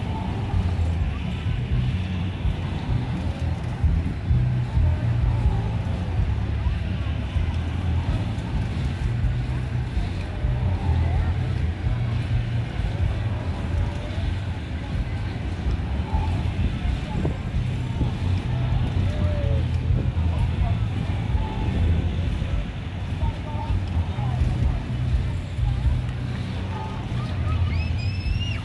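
Spin Out carnival ride running: a steady low rumble from the ride as the car circles its track, with crowd chatter and faint fairground music in the background.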